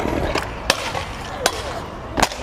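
Stunt scooter's wheels rolling fast over brick paving: a steady rumble, with two sharp clicks about three-quarters of a second apart.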